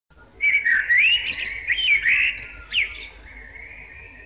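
A songbird singing: a run of loud whistled notes that glide up and down, fading after about three seconds to a fainter, steadier note.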